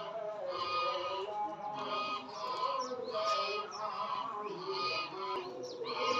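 Men's voices reciting together at a distance, in short phrases that repeat about once a second.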